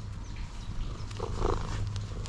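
Domestic orange tabby cat purring steadily while being stroked, with one brief louder sound about a second and a half in.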